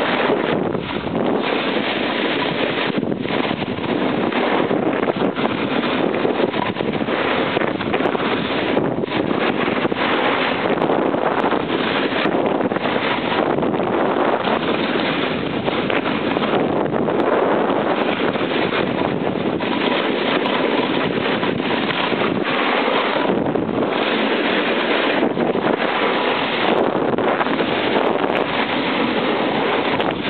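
Steady rushing of wind over the microphone mixed with the hiss of skis sliding over packed snow while skiing downhill.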